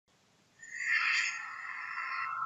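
Electronic intro sound effect for an animated neon logo: a shimmering synthesized swell that comes in about half a second in, is loudest around one second, then holds with a thin high tone.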